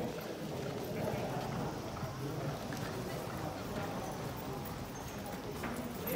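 Hoofbeats of a thoroughbred racehorse cantering past on the turf course, with indistinct voices around.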